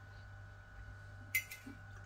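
A metal fork clinks once, sharply, against a dinner plate a little past halfway through, over a faint steady hum.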